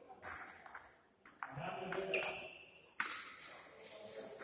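Table tennis ball being hit back and forth in a rally: sharp clicks of the ball on the bats and table, roughly every half second to a second. The loudest click, about two seconds in, has a brief ringing tone after it.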